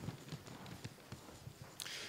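Faint, irregular knocks and shuffling as a man sits down on a chair at a wooden table, with a soft rustle near the end.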